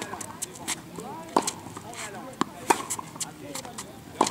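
Tennis ball being struck by rackets and bouncing on a hard court during a baseline rally: a string of sharp pops, one every half second to a second.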